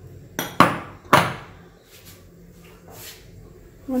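Glass bowl of flour set down on a granite countertop: two sharp knocks about half a second apart, each ringing briefly.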